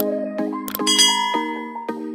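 Intro background music with held chords, and a click followed a little under a second in by a bright, ringing ding: a subscribe-button and notification-bell sound effect.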